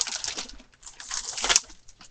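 Rustling and handling noise from things being moved about, with one sharp click about one and a half seconds in.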